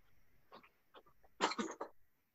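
Short, broken bursts of a person's voice over a remote meeting line, with the loudest cluster a little past halfway.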